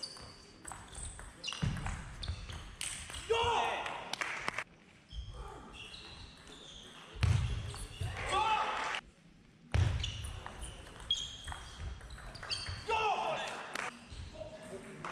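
Table tennis rally: a plastic ball clicking off the rackets, one of them fitted with antispin rubber, and off the table in quick irregular succession. Short bursts of shouting and voices break in three times, the last near the end.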